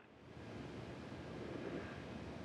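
Faint, steady hiss of an open remote audio line, fading in over the first half second as the feed switches on.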